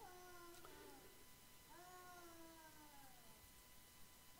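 Near silence with two faint, drawn-out whining calls, one at the start and one about two seconds in, each sliding slightly down in pitch.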